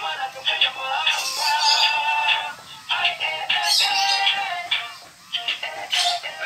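Dancing cactus plush toy playing a song with singing through its small built-in speaker. The sound is thin and tinny, with no bass, and has two brief dips in the music.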